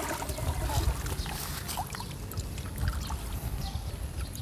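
Water trickling and dripping from a wet fine-mesh net as it is lifted and handled at a pond's edge, with small scattered crackles and a low rumble underneath.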